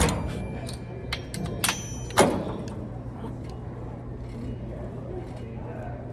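Metal clanks from a cable machine during reps: a sharp ringing clank right at the start, a lighter ringing clink about a second and a half in, and another clank just after two seconds, over a steady low hum.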